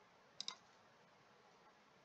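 Near silence, with two quick clicks of a computer mouse close together about half a second in.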